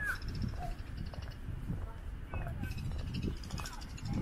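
A crow cawing several times, harsh short calls, over a steady low rumble of wind and handling on the microphone.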